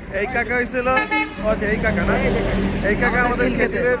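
A vehicle horn sounds as one steady tone for over a second, starting about a third of the way in, over the low rumble of passing road traffic, with men talking.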